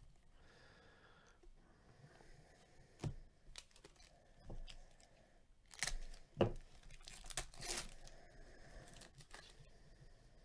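A foil pack of 2020 Panini Prizm football cards being torn open, the wrapper ripping and crinkling in short, faint bursts, loudest about six seconds in.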